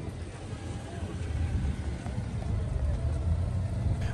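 Steady low rumble of motor traffic, with faint voices of people in the background.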